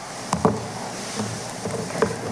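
Room noise of people getting up and packing up after a class is dismissed: shuffling and handling sounds with a couple of sharp knocks about half a second in.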